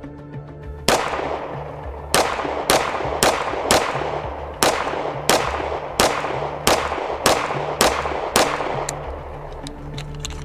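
A string of about a dozen 9 mm pistol shots from a Strike One ERGAL, fired at roughly two a second and each ringing out over the range, ending with the slide failing to lock back on the empty magazine.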